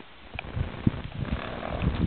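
A horse blowing out a soft snort near the microphone, about halfway through, among scattered low thuds.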